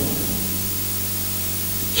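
Steady hiss with a low electrical hum underneath, holding level throughout: the noise floor of the microphone and sound system while the voice pauses.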